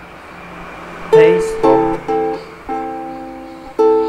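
Ukulele strummed in a rhythmic strumming pattern: about five chord strums beginning about a second in, each ringing briefly before the next.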